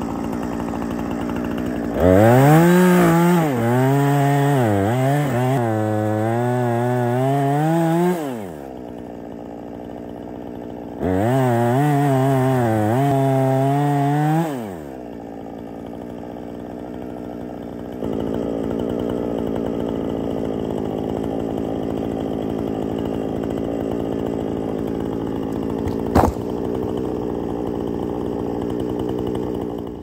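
Gas chainsaw running steadily, then revved up and cutting into a dead tree trunk twice: about two seconds in for some six seconds, and again about eleven seconds in for some four seconds. Its pitch wavers up and down under load. Between and after the cuts it drops back to a lower, steady running note, with one sharp click near the end.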